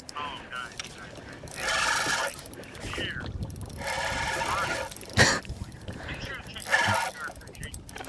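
A man's voice talking faintly through a phone's speaker, thin and tinny, in several short stretches, over the mechanical whirr and clicks of a spinning reel as a hooked walleye is reeled in.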